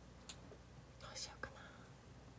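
Quiet room with a few faint clicks of makeup items being handled and a brief soft whisper about a second in.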